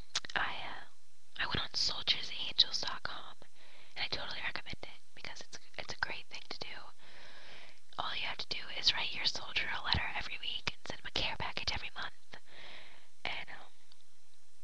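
A person whispering in phrases, with short pauses between them.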